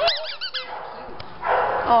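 A dog giving a quick run of about four high-pitched whining yips at the start, over about half a second.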